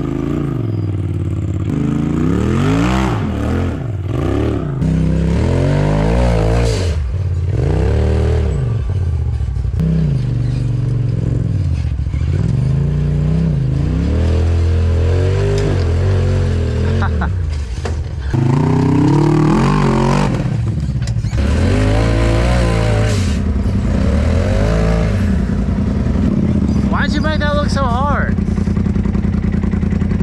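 Side-by-side off-road engine revved up and down in repeated bursts while the machine climbs rock ledges.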